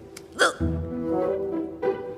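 A single short hiccup about half a second in, over soft background music.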